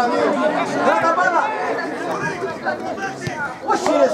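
Several voices talking and calling out over one another, the chatter of people watching or playing a football match.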